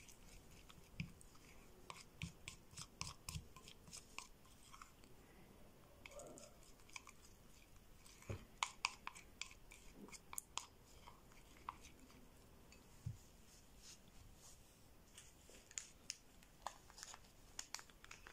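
Faint, irregular clicking and scraping of a plastic spoon stirring a thick, creamy paste against the sides of a ceramic bowl, in short bunches with quieter stretches between.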